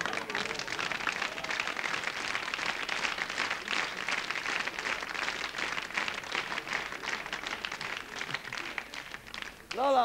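Audience applauding, a steady patter of many hands that dies away just before the end.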